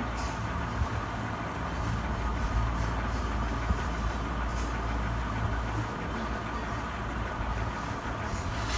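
A steady low background rumble with a few faint clicks.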